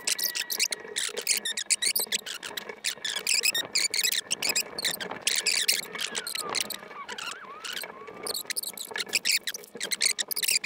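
Dried corn kernels and paper being handled on a glass tabletop: dense, rapid, irregular clicking and rustling, with a few faint squeaky pitch glides in the middle.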